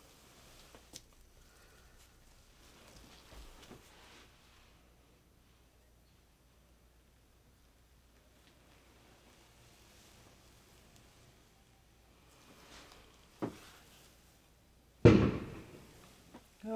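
A firework bang, one really loud thud near the end with a short fading tail, with a smaller sharp pop about a second and a half before it; otherwise the room is quiet.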